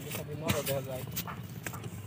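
A short, indistinct human voice, with a few sharp clicks and knocks scattered through it, over a steady low outdoor rumble.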